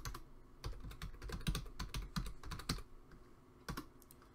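Typing on a computer keyboard: a quick, uneven run of key clicks that stops about three seconds in, with one more keystroke near the end.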